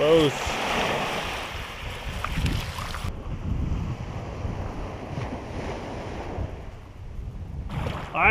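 Wind buffeting a camera microphone over breaking surf on a beach, as a steady rumbling rush. About three seconds in it turns duller.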